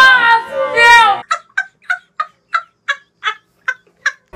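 A shouted voice for about the first second, then a string of about ten short, evenly spaced cackling calls, roughly three a second, with dead silence between them: an edited-in laughing sound effect.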